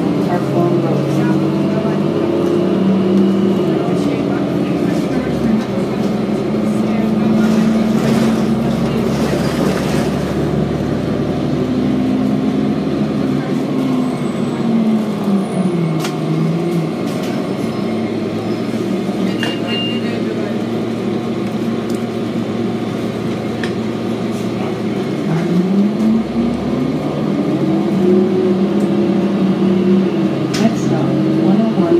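Diesel engine of a 2007 Orion VII transit bus, heard from inside the cabin while riding. The engine's pitch falls around the middle and rises steadily near the end as the bus slows and pulls away again, over steady road noise.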